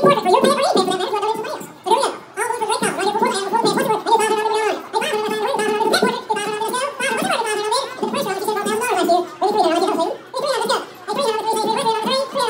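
Auctioneer's rapid bid-calling chant, a fast rolling stream of numbers and filler words that barely pauses, amplified through a microphone and PA.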